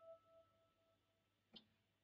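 Near silence: a single guitar note, a high E, dying away over the first second, then one faint click about one and a half seconds in.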